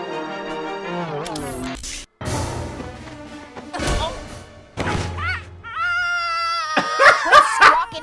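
Orchestral film music ends about two seconds in. Movie fight sound effects follow, a few sharp thumps and whacks of staff blows. After that comes a raised voice and, near the end, loud laughter.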